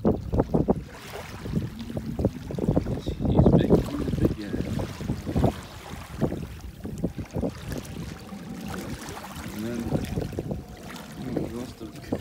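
Wind buffeting the microphone in uneven gusts, over small waves washing in across shallow sand at the water's edge.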